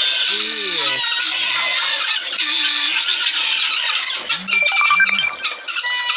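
A large flock of domestic helmeted guineafowl calling together in a continuous, high, harsh chatter of overlapping cries, with a few short clear whistled notes near the end.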